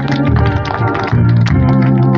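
Electronic keyboard in an organ voice playing sustained chords over a deep held bass note, with light percussive taps.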